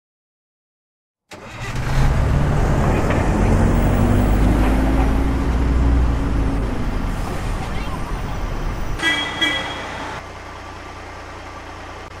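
Bus sound effect: an engine running and revving, its pitch rising slightly, then a horn toot lasting about a second, about nine seconds in, after which a quieter steady hum remains.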